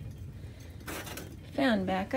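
A single brief knock about a second in, over a low steady rumble; a woman begins speaking near the end.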